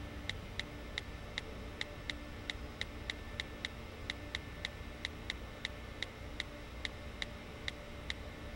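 Keypresses on an HTC phone's keyboard while a text message is typed: short clicks with a slight pitched ring, one per letter, at an uneven pace of about three a second with brief pauses between words.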